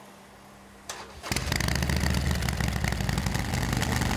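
Harley-Davidson Sportster XL 1200 Forty-Eight V-twin started: a short click, then about a second in the engine catches and runs steadily, very loud. It is breathing through an aftermarket exhaust that police suspect is not permitted on this bike, measured at 108 dB against the 98 dB allowed.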